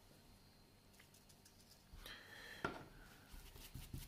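Near silence, then from about halfway faint scratchy brushing with a light click as a paint-loaded brush is wiped off on paper towel for dry brushing.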